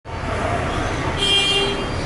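Steady low background rumble, with a brief high-pitched tone lasting about half a second a little over a second in.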